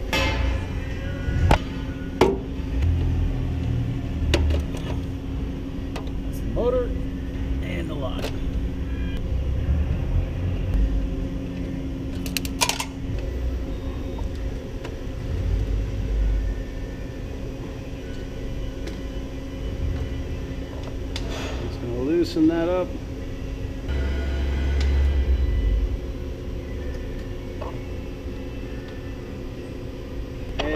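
Scattered clicks and knocks of hands unplugging wiring connectors from a Danfoss VLT 2800 variable-frequency drive, with one sharp snap about twelve seconds in, over a steady low hum.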